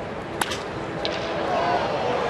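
Crack of a wooden baseball bat hitting a pitch hard, once, about half a second in, followed by ballpark crowd noise swelling as the ball carries to the outfield.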